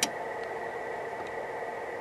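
One sharp click at the very start, then a steady hiss with a faint high whine from the running radio bench gear.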